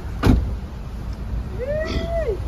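A single sharp thump about a quarter-second in, over a steady low rumble. Near the end comes a drawn-out vocal-like call that rises and then falls in pitch.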